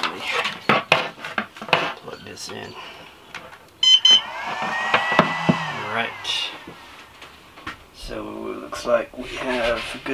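Cables and connectors being handled and plugged in, with clicks, knocks and rubbing on the wooden shelf. About four seconds in, a short electronic beep and a brief run of tones as the ISDT T6 balance charger powers up from the van's house batteries.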